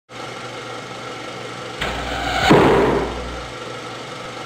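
Logo-intro sound effect: a steady hum, with a swell from about two seconds in that builds to a hit with a low boom about half a second later, then dies back into the hum.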